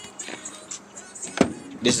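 Faint music playing from a car stereo, with one sharp knock about one and a half seconds in.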